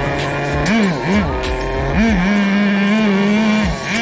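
Small nitro engine of a Tamiya TNS-B radio-controlled car revving: two quick blips up and down about a second in, then held at a steady pitch for about a second and a half before dropping off near the end. The engine is still being run in and is not yet tuned.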